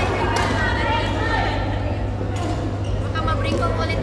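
Background chatter of players echoing in a large indoor sports hall over a steady low hum, with a couple of sharp racket-on-shuttlecock hits, one just after the start and one about halfway through.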